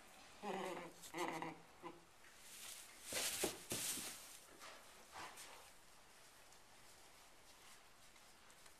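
A horse giving two short, low pitched calls, like a mare nickering to her newborn foal, followed about three seconds in by a louder rush of breathy noise.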